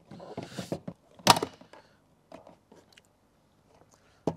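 Hard plastic GIVI Monokey top box being set onto its metal base plate: about a second of knocks and scraping, then one sharp, loud snap as it locks home, followed by a few light clicks.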